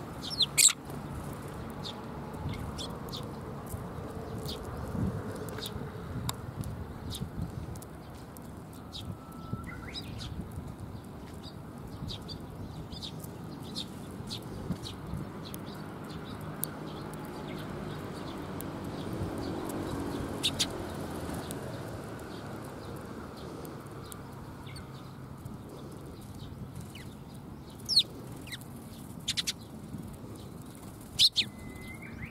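Eurasian tree sparrows feeding from a hand: brief wing flutters and scattered short, sharp clicks and chirps over a steady low background noise, with a few louder flutters near the start, midway and near the end.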